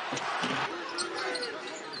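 Basketball game sound in a packed arena: a basketball bouncing on the hardwood court under steady crowd noise, with faint voices.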